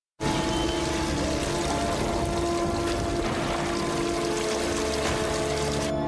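Steady rushing noise like pouring water, starting suddenly just after the start, under the held tones of dark soundtrack music.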